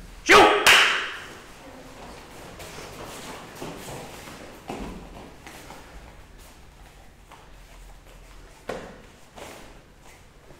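Two sharp, loud sounds in quick succession about half a second in. After them the hall is quiet apart from a few soft thuds and shuffles of bare feet on foam mats as people walk into line.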